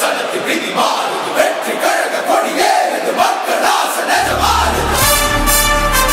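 A large crowd of supporters shouting and cheering, many voices at once. About four seconds in, music with a deep bass comes in and takes over near the end.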